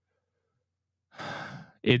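Near silence, then about a second in a man takes one audible breath close to the microphone, lasting under a second, just before he speaks again.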